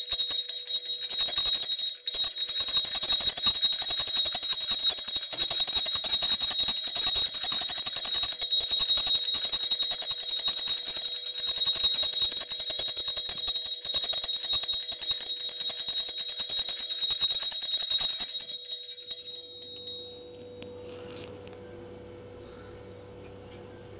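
A brass puja bell rung fast and without a break, a bright ringing that stops about 18 seconds in and dies away over the next two seconds.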